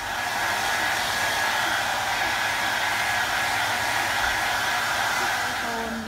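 Handheld hair dryer running steadily: an even rushing blow with a faint, steady whine. It cuts in at the start and stops near the end.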